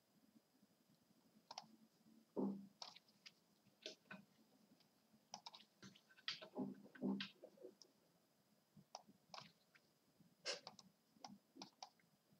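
Near silence broken by faint, irregular clicks and a few soft knocks, the sound of a computer mouse being clicked as chess moves are made.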